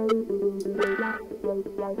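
Guitar part played back from a cassette on a Tascam 414 mk2 Portastudio with a digital wah effect blended in from the computer: a quick run of plucked notes over a held low note.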